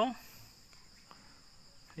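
Faint, steady high-pitched trilling of insects, typical of crickets, heard as a background drone, with the last syllable of a man's word right at the start.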